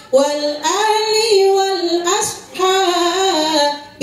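A woman singing solo and unaccompanied into a microphone, holding long notes with wavering melodic turns. Two phrases, with a short breath between them about two and a half seconds in.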